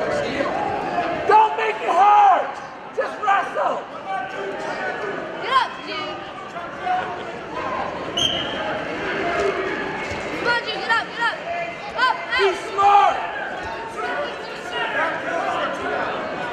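Mixed voices of spectators and coaches echoing around a gymnasium, with frequent short squeaks and a few thuds from the wrestling on the mat.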